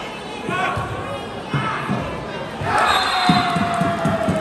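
A volleyball bouncing several times on the hard court floor, with crowd voices around it; near the end a long voice-like call slides slowly down in pitch.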